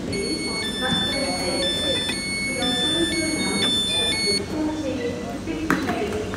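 Train door-release warning: an electronic two-tone signal, high and low tones alternating about every half second for about four seconds, sounding as the doors are unlocked for passengers. A sharp clunk follows near the end as a door opens, over platform chatter.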